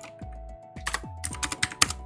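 A quick run of computer keyboard keystrokes, several sharp clicks in the second second, as a value is typed in. Background music with a steady beat plays throughout.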